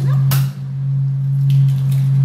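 Eggs being cracked and split open over a plastic bowl: a sharp tap about a third of a second in and a softer one later, over a steady low hum.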